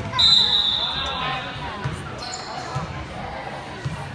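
A referee's whistle gives one long, loud blast just after the start, then sounds again more faintly about two seconds in. A basketball bounces on the hardwood floor about once a second, with voices in the background.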